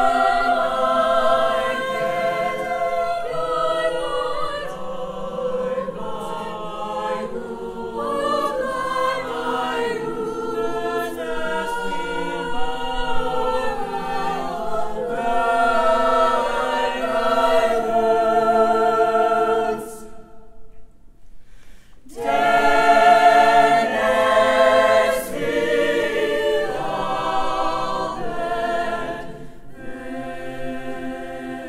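Mixed choir of men and women singing in several parts, holding chords that shift from note to note. The voices stop for about two seconds about two-thirds of the way through, then come back in together.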